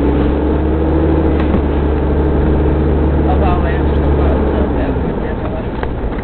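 Mitsubishi Pajero 4x4 being driven, heard from inside the cabin: a steady low engine and road drone whose pitch climbs slightly, easing off about five seconds in. A short laugh comes at the start.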